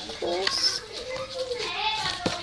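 A child's wordless vocalising: a wavering voice that slides up and down in pitch.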